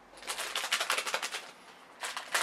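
Crinkling of a blind-bag package being handled, a rapid run of small crackles that stops about a second and a half in.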